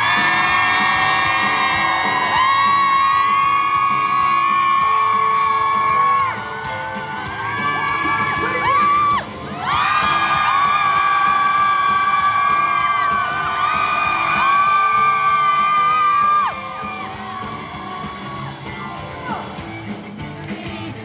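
A pop-rock band playing live, with drum kit and long held high notes carrying the melody. The music drops to a quieter passage about six seconds in, comes back loud, and falls quieter again about sixteen seconds in.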